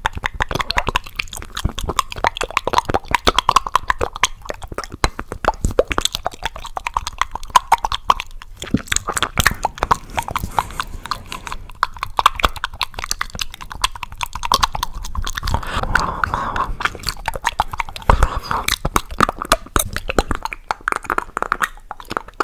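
Close-miked mouth sounds of someone eating a chocolate caramel and peanut ice cream bar: continuous rapid wet clicks, smacks and chewing.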